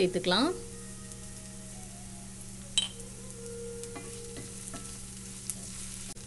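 Sliced onions, garlic and curry leaves sizzling in sesame oil in a cast-iron skillet: a steady frying hiss. A single sharp click comes about three seconds in.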